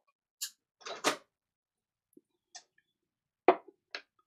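A drinking glass being sipped from and put back down. A few short, scattered handling noises lead up to one sharp knock about three and a half seconds in, then a last small click.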